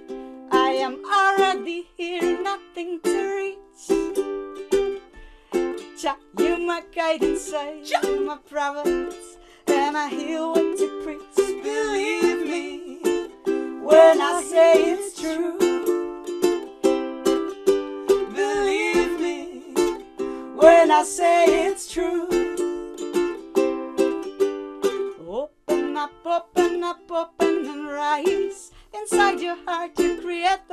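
Live music: a strummed plucked-string instrument playing repeated chords, with a wavering melody line rising above it at times.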